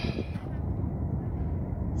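Wind buffeting the microphone on an exposed mountain ridge: a steady low rumble with no clear pitch or rhythm.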